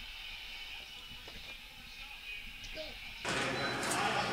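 Quiet room tone with a few faint small knocks and ticks. About three seconds in, a steady background hiss suddenly becomes louder.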